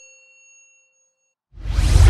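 Logo sound effect: a metallic ding rings and fades away over about a second. After a short silence, a loud whoosh with a deep rumble starts about a second and a half in.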